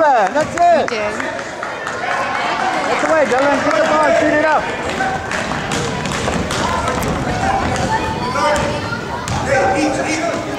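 Voices calling out and shouting in a gym for the first few seconds, then a basketball dribbled on a hardwood court, a run of quick thuds under crowd chatter.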